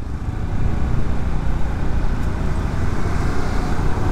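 Motorbike riding at low speed, its engine running steadily under wind and road noise on the microphone, while a car overtakes close alongside.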